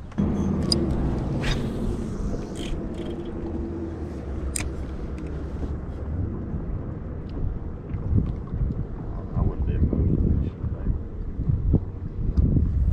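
Steady low motor hum from the fishing boat through the first few seconds, fading out, then wind gusting and rumbling on the microphone over open water.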